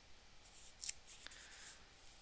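Faint rustling of thin craft-foam cutouts being slid and set down on a sketchbook page, with a light tap about a second in.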